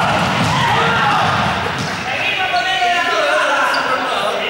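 Several young people's voices shouting and chattering at once, echoing in a large sports hall, over thuds of running footsteps on the hall floor.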